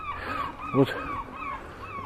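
An animal's short, high, falling calls, repeated about four times a second, heard from the zoo grounds behind the fence.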